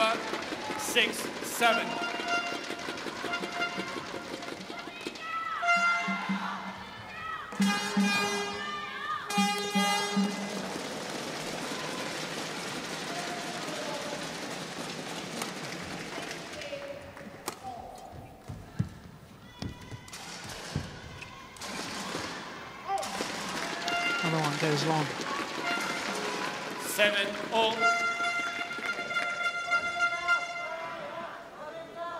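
Badminton singles rallies: sharp racket strikes on the shuttlecock and short, high-pitched squeaks of shoes on the court, coming in clusters.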